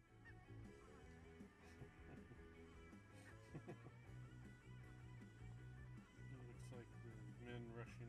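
Faint background music with guitar.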